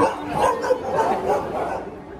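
A dog barking, a run of short barks that die away near the end.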